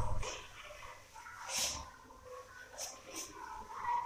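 Marker writing on a whiteboard: a few short, faint scratchy strokes, one about a second and a half in and two more near the end.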